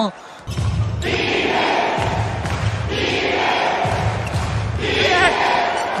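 Indoor basketball game sound: steady crowd noise filling the hall, with the ball bouncing on the court.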